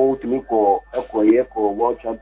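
Only speech: a man talking over a telephone line.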